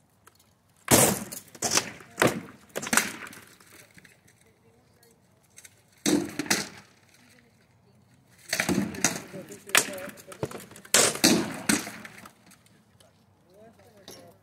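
Sharp clacking blows of SCA rattan weapons striking wooden shields and steel armour during an armoured bout, in quick bursts of two to four hits with short pauses between.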